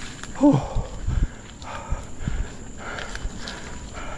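A cyclist out of breath after a hard uphill climb: a falling "whew", then about three heavy, gasping breaths. Low knocks from the mountain bike rolling over the dirt trail come in about a second in.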